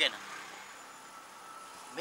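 Faint, steady background noise between lines of dialogue: an even hiss with a thin steady tone running through it, and a short sound near the end.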